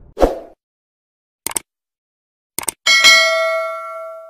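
Subscribe-button animation sound effects: a short hit, two pairs of quick mouse clicks, then a notification bell ding about three seconds in that rings out and fades.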